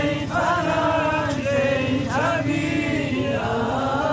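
A group of voices singing a slow song together, holding long notes that waver and bend in pitch; a new phrase begins about two seconds in.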